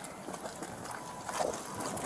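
Scuffling and rustling of deputies' uniforms and gear as they handle a handcuffed person on the ground, with a short strained vocal sound about one and a half seconds in.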